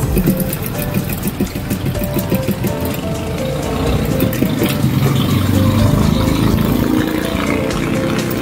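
Background music playing over an industrial single-needle sewing machine running as fabric is stitched.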